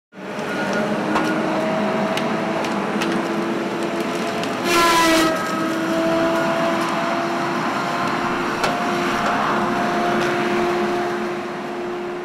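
Heavy logging machinery running: a steady diesel engine drone with a few sharp clanks. About five seconds in there is a louder, brief whine that slides slightly down in pitch.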